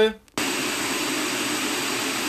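Pink noise test signal from two small full-range loudspeakers playing exactly the same signal. It switches on abruptly about a third of a second in and then holds at a steady level.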